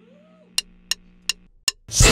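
Drumsticks clicked together four times, evenly spaced about a third of a second apart, counting in a rock band, over a low steady amplifier hum. A faint short rising-then-falling tone sounds near the start.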